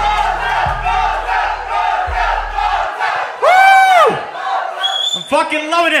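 A live hip-hop beat with heavy bass kicks plays under crowd noise, then cuts out about three seconds in. Right after, someone lets out one loud, drawn-out yell, and a voice starts speaking near the end.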